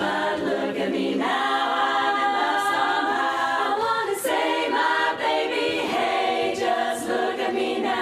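Women's barbershop chorus singing a cappella, many voices holding chords in close harmony that move from one to the next without a break.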